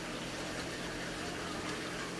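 Steady hiss of background noise with no distinct events, fairly quiet and unchanging.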